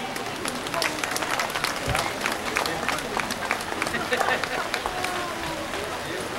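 Scattered applause from a small outdoor crowd: irregular hand claps that thin out near the end, with faint voices.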